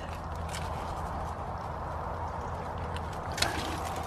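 Faint rustling of squash vines and light clicks of pruning secateurs being worked in among the stems, with a sharper click near the end, over a steady low background noise.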